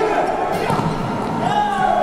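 A futsal ball being kicked and bouncing on a wooden indoor court, with players' voices calling out over it.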